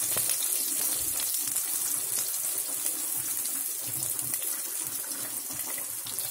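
Shallots, curry leaves and mustard seeds sizzling in hot oil in a pressure cooker: a steady high hiss with fine crackles.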